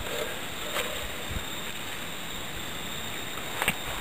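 Steady outdoor background hiss, with a few faint light clicks and rustles of hands working a braided cord around a rolled wool blanket.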